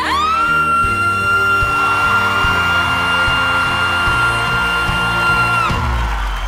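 A woman singing one long, very high whistle note, about F6, over band accompaniment. It slides up at the start, holds steady for about five and a half seconds, then drops away near the end.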